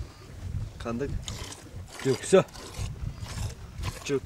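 Low rumbling noise among a goat herd, with a few short calls: one about a second in and two brief ones bending downward a little past the middle.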